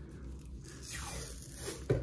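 Black cloth hockey tape being pulled off the roll and wound around a hickory golf club's grip, in several drawn-out pulls. A brief low thump comes near the end.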